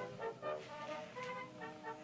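Quiet background music: a melody of short pitched notes.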